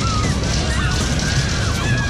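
Flying coaster fairground ride running: a steady low rumble, with several high, wavering squeals overlapping over it.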